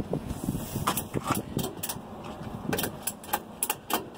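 Ratchet strap's ratchet clicking in irregular runs as it is cranked tight around a spin-on diesel fuel filter, used as a makeshift filter wrench to break loose a filter that is on very tight.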